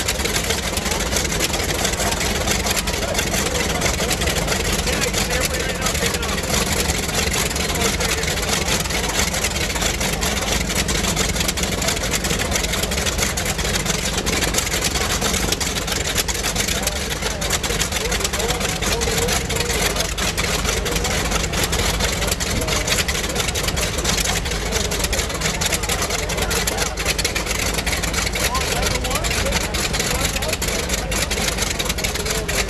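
A steady engine running at low power throughout, with no change in pitch or level, and voices in the background.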